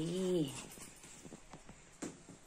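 A person's wordless, drawn-out voiced sound like humming, wavering in pitch and trailing off about half a second in, followed by faint clicks and rustles of the backpack being handled.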